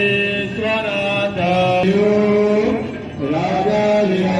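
Hindu aarti hymn sung in a chanting style, one voice holding long melodic notes that glide from pitch to pitch, with a brief break about three seconds in.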